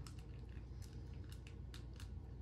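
Faint, scattered clicks and creaks of a plastic action figure's interchangeable face piece being wiggled and pried out of the head, a tight fit that is hard to free.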